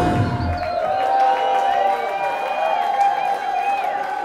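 A live rock band's final chord ringing out and dying away in the first second, with one held note carrying on, while the club audience cheers and whistles.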